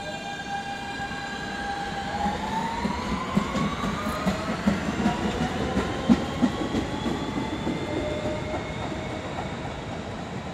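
R160 subway train accelerating out of the station: its motor whine climbs steadily in pitch while the wheels click over the rail joints, the clicks loudest in the middle seconds.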